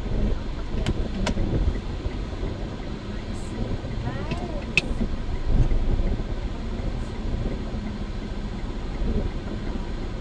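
Steady low rumble of an idling vehicle and passing road traffic, heard from inside a car's cabin while it waits at a light. Two sharp clicks come about a second in, and a brief wavering high sound about four seconds in.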